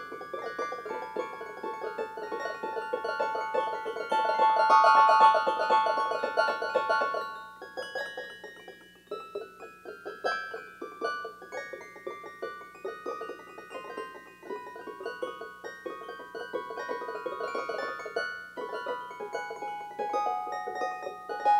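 Piano-like keyboard music: held notes ringing over a rapid flurry of repeated notes and a steady low drone. It swells loudest about four seconds in, thins out around eight seconds, then builds again.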